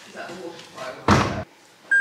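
Door of a Cater-Wash 18 kg front-loading washing machine slammed shut once, about a second in.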